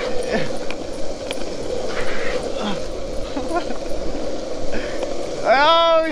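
Longboard wheels rolling fast on asphalt, a steady rumble and hiss. Near the end a man's voice shouts once.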